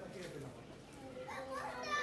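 Faint background voices, with a higher-pitched, child-like voice rising in the second half.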